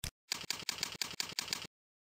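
A single mouse click, then eight quick, evenly spaced computer-keyboard keystrokes, about six a second, as a username is typed into a login box.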